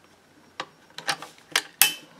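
The action of a Henry lever-action .22 LR rifle being worked: a series of short metallic clicks as the lever is closed, the loudest near the end.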